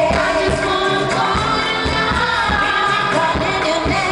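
Live pop concert music through an arena sound system: a singer with choir-like backing voices over a steady beat.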